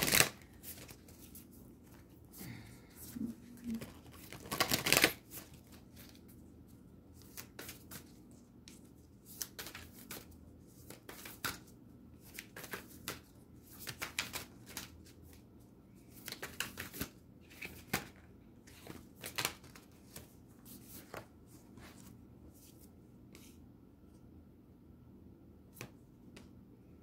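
A deck of oracle cards being shuffled by hand: a run of irregular card flicks and slaps, with a louder flurry about five seconds in, thinning out near the end.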